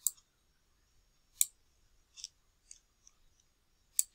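Computer mouse buttons clicking while a text box's sizing handle is grabbed and dragged: a sharp click at the start and another about a second and a half in, with a few fainter ticks between.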